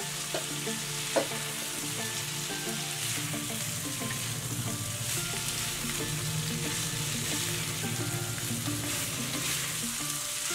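Diced carrot, green beans and potato sizzling in hot oil in a kadai while being stirred with a spatula: a steady frying hiss, with one sharp knock about a second in.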